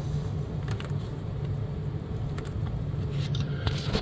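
Steady low room hum, with a few faint light clicks and taps as a small miniature model is handled and set down.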